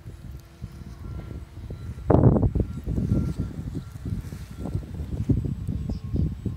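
Wind buffeting the microphone: an uneven, gusty rumble with its strongest gust about two seconds in.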